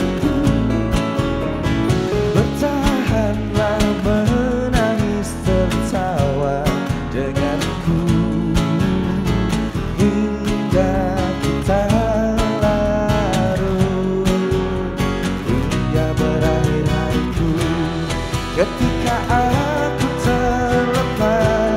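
Live acoustic band performance: a male lead vocalist singing over strummed acoustic guitar and a Nord Stage keyboard.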